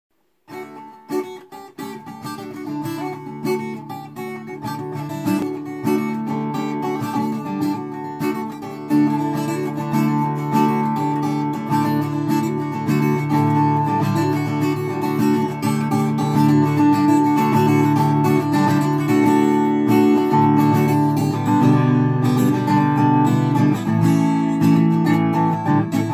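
Solo acoustic guitar playing an instrumental opening of picked notes and chords. It enters about half a second in and grows louder over the first several seconds, reaching a full, steady level by about nine seconds.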